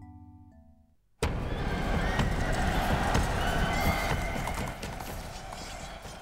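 Soft mallet-percussion music notes fade out. About a second in, a sudden cut brings in loud horses galloping and neighing, a dense clatter of hooves.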